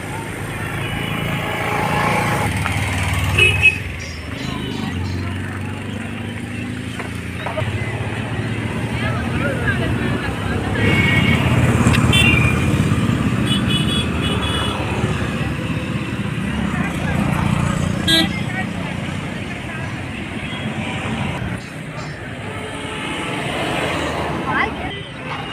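Road traffic heard from a moving vehicle: a steady engine hum that swells from about 11 to 13 seconds, passing cars and motorbikes, and a few short horn toots.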